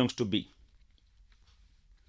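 A voice finishing a short phrase, then a pause of about a second and a half with a few faint clicks.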